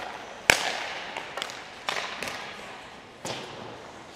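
Hockey puck shot in an ice arena: one sharp crack about half a second in that rings out in the rink's echo, followed by a handful of softer knocks of puck and stick on the ice and goalie gear.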